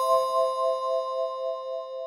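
A single struck chime with several clear tones, rung just before and slowly fading away, marking a break between topics of the interview.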